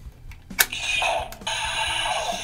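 A sharp plastic click about half a second in as the die-cast coin is seated in a toy Power Morpher, followed by the morpher's steady electronic sound effect through its small built-in speaker.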